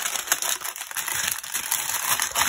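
Clear plastic packaging crinkling and rustling as it is handled, a packet of small bags of diamond-painting drills turned over in the hands, with a run of quick sharp crackles.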